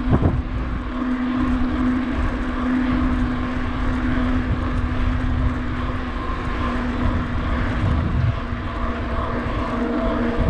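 Wind rushing over the microphone of a bicycle moving at speed, with the steady rolling hum and rumble of its tyres on an asphalt path. A knock comes right at the start, and a low drone fades about eight seconds in.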